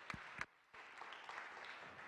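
Faint scattered audience applause: a few sharp claps in the first half second, then a light patter of clapping that fades away.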